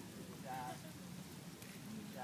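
Faint, brief bits of people's voices over a steady crackling background hiss.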